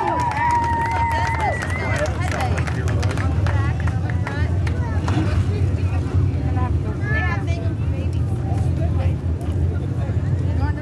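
Indistinct voices of people talking over a steady low engine drone.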